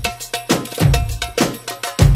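Background music with a steady percussion beat: a deep drum hit about every second and lighter, quicker strikes between them, with a short ringing note repeating in the pattern.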